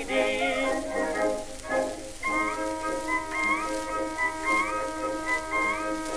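Instrumental break on a 1912 acoustic 78 rpm record: the male vocal duet's last sung syllables fade in the first second, then the accompanying orchestra plays alone, with a high held melody line that slides up into its notes about once a second, over record surface hiss.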